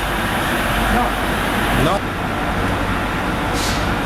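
VPM 900 vibratory sieve running, a steady loud mechanical drone with a low hum underneath.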